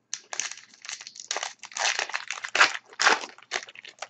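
Hockey card pack wrapper crinkling and rustling in an irregular string of bursts as it is torn open and handled.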